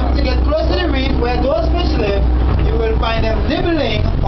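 Voices talking over the steady low hum of a glass-bottom tour boat's engine.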